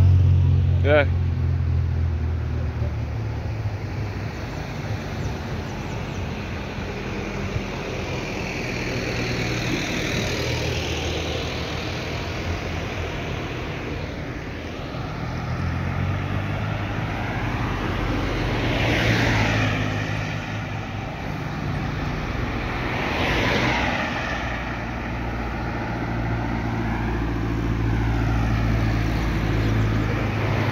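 Cars passing on a highway, their tyre and engine noise swelling and fading as each one goes by, with the loudest passes about two-thirds of the way through. A low rumble runs underneath.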